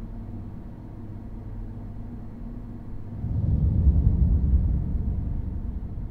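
A deep, low rumble that swells louder about halfway through and then eases off slightly.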